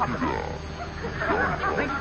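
A studio audience laughing, many voices overlapping, on an old radio broadcast recording.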